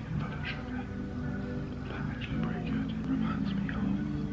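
A man talking over background music with steady held low notes.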